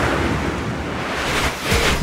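A whoosh transition sound effect marking the change to a new news section: a rushing noise that swells, eases off, then swells again near the end.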